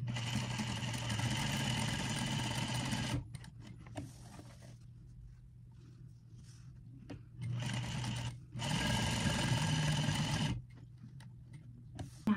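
Sewing machine stitching a seam in runs: about three seconds of stitching, a pause of about four seconds, then two shorter runs with a brief break between them, stopping a second or so before the end.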